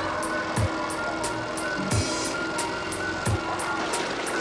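A DJ mix of dance music playing from the decks: a fast, steady hi-hat beat with deep kick drums falling about once a second, over sustained synth tones.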